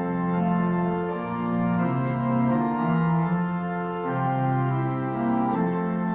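Church organ playing slow, sustained chords, the harmony shifting about once a second.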